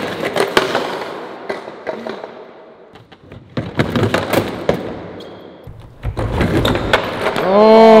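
A bongo balance board, a skateboard deck on a roller, clattering and knocking on a concrete floor as the rider falls off and the board kicks away. There is more knocking and rolling about three and a half seconds in as he gets back on, then a loud rolling rumble, and a drawn-out shout near the end.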